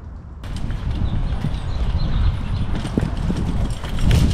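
Wind rumbling on a helmet-mounted camera microphone, with rustling and a few small clicks and knocks scattered through it.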